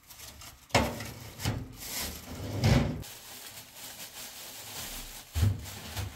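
Kitchen handling sounds as raw chicken is taken from a plastic bag onto a plate on the counter: knocks and clatter of the plate and utensils with plastic rustling between them. There are four sharper knocks, the loudest a little under three seconds in.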